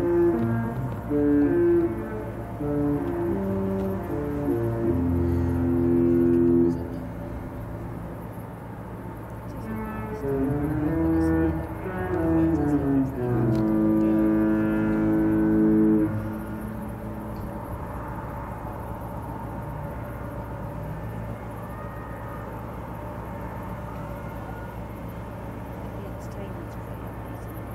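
A Disney cruise ship's musical horn playing a tune in two phrases of stepped notes, each ending on a long held note, with a pause of about three seconds between them. This is the horn the ship sounds as it leaves port.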